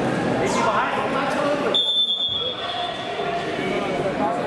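Chatter of many voices in a large sports hall. About two seconds in, a referee's whistle gives one steady blast of about a second, signalling the wrestling bout to resume.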